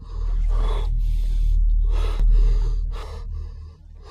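A man gasping and choking in a series of ragged, breathy gasps as he froths at the mouth, in the throes of poisoning.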